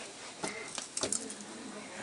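A few light metallic clicks and knocks as the hydraulic release on a Carver laboratory press is opened to let the pressure off, with a faint steady low tone in the second half as the pressure bleeds away.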